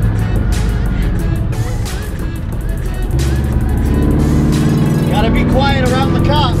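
Scion FR-S's flat-four engine running as the car drives, heard inside the cabin, its note stepping up about three seconds in. Music with vocals plays over it.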